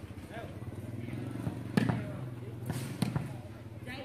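Two sharp thuds of a volleyball being struck, just over a second apart, the first the louder, over a steady low engine hum.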